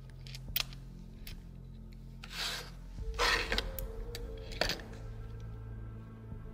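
Background music with a steady low tone, over a few light clicks and short rustles of small RC car parts being handled on the table.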